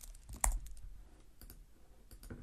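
Computer keyboard keys being pressed: a handful of light, scattered clicks with one louder keystroke about half a second in.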